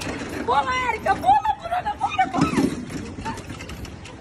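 People's voices talking over steady outdoor street noise.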